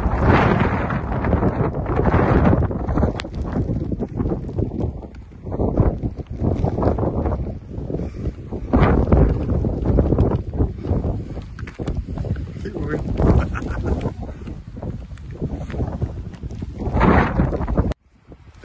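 Wind buffeting the microphone, a gusting rumble that keeps rising and falling.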